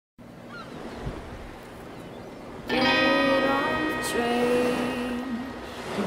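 Opening of a song: a faint, even noisy wash, then about two and a half seconds in the music comes in louder with held, slightly bending notes.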